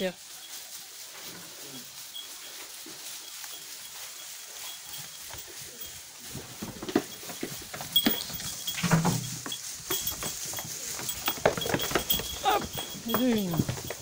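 Miniature goats moving about on straw bedding in a barn: quiet rustling at first, then busier knocks and shuffling with a few short goat bleats in the second half.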